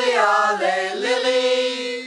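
A small group of men and women singing a cappella together, chanting a traditional Mende funeral song from Sierra Leone. The line moves and dips, then settles into a long held note.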